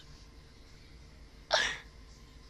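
Near silence, broken about one and a half seconds in by a single short, sharp burst of breath from a person close to the microphone.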